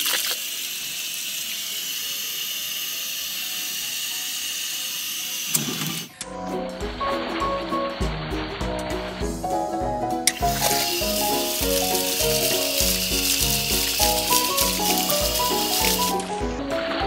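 Water spraying from a small cut hole in a water balloon fitted on an outdoor hose faucet: a steady hiss, ended a little over five seconds in by a sharp snap as the balloon bursts. Background music with a steady beat follows, with running water under it in the second half.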